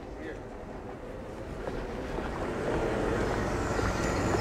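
A motor vehicle passing along the street, a steady rumble of engine and tyres that grows louder as it approaches.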